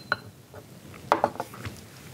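Small ceramic tea cups clinking and knocking as tea is poured from one cup to another and the cups are handled on a bamboo tea tray: a few light clicks, one near the start with a brief high ring, and a short cluster a little over a second in.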